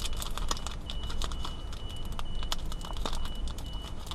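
Wrapper of a Topps Heritage baseball card pack crinkling as hands tear and peel it open, a quick irregular run of small sharp crackles.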